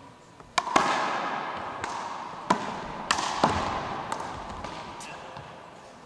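Handball rally in one-wall big ball: a hollow rubber ball is slapped by hand and smacks off the wall and hardwood floor about eight times in quick, uneven succession, echoing in the gym. The smacks stop about five seconds in.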